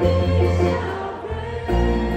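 Live worship band playing a song, with a woman's lead vocal over electric bass, drums and bowed strings. The bass moves to a new low note near the end.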